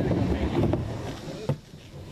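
Skateboard wheels rolling on a plywood bank ramp after a drop-in, making a steady rumble. A sharp knock comes about one and a half seconds in, and the rumble drops away after it.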